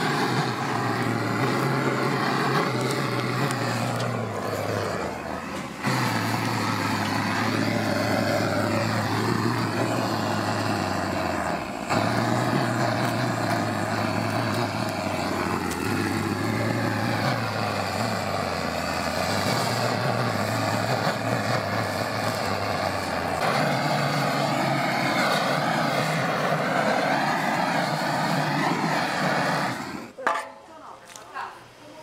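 Handheld butane gas torch burning steadily as its flame is played over the skin of a boiled pig's head to singe it. The sound dips briefly about four seconds in and again about twelve seconds in, and stops at the very end.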